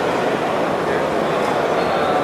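Steady babble of a crowd, many voices talking at once with no single voice standing out.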